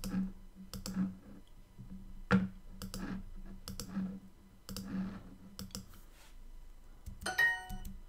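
A string of mouse clicks, each with the Duolingo app's soft pop as a word tile is tapped into place. About seven seconds in comes a short bright chime of several tones, the app's correct-answer sound.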